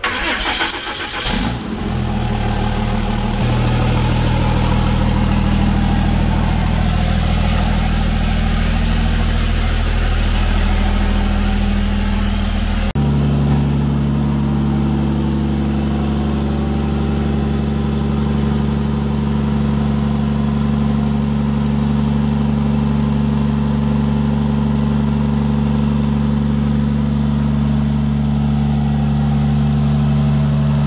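A freshly swapped 6.7 Cummins turbo-diesel straight-six starts up at the outset, then idles steadily on its first break-in run, venting through a short upright stack. About halfway through the sound changes abruptly to another steady, even idle.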